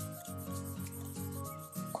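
Graphite pencil (Mitsubishi Hi-uni) scratching across Kent paper in rapid back-and-forth shading strokes, a quick run of rasping strokes, with soft background music under it.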